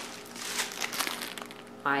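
Plastic bag of frozen chicken crinkling as it is picked up and handled, a quick run of crackles mostly in the first second.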